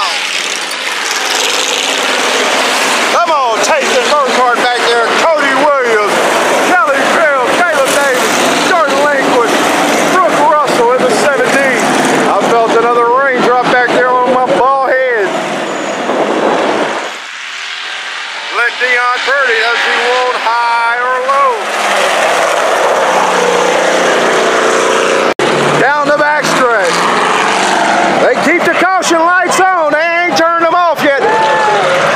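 IMCA Hobby Stock race cars running laps on a dirt oval, their engines revving up and falling off in repeated swells as they go through the turns and pass. The sound is loud throughout, with a brief lull around the middle.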